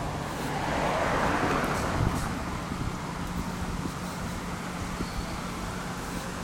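A car passing by on the road, its tyre and engine noise swelling over the first second or two and then fading away.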